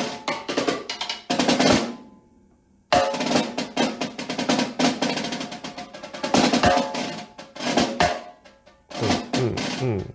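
Concert snare drum played with sticks: rolls, buzz strokes and accented notes, using different parts of the head for dynamics. About two seconds in the playing stops for roughly a second, then resumes.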